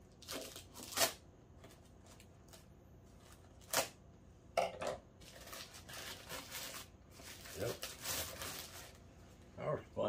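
A plastic mailer bag being torn and crinkled open by hand, in a series of sharp tearing bursts and longer rustles, as a small cardboard box is worked out of it.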